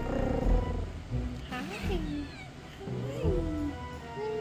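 A kitten meowing a couple of times, each call rising and then falling in pitch, mixed with a woman's soft greeting over background music.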